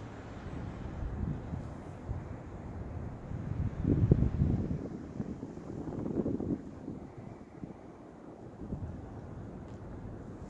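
Wind buffeting the microphone: an uneven low rumble that swells in gusts about four and six seconds in.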